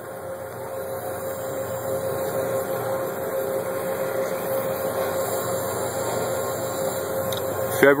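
Steady machine-like hum and hiss with a constant mid-pitched whine, growing a little louder over the first couple of seconds.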